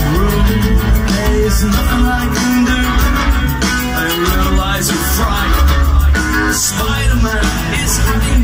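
Live rock band playing an instrumental passage with steady bass notes under guitar and keyboard lines, recorded from the crowd over the PA.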